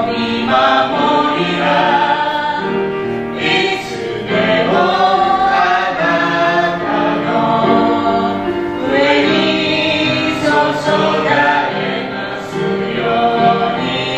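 A small mixed group of women and men singing a hymn together in Japanese.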